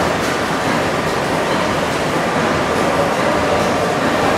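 Old stationary-engine machinery running: shafting, pulleys and bevel gears turning, giving a loud, steady mechanical noise with no single clear beat.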